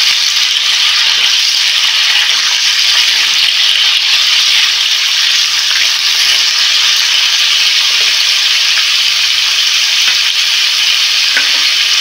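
Chopped vegetables sizzling in hot oil in a steel kadai as they are stirred with a spatula: a steady, loud hiss.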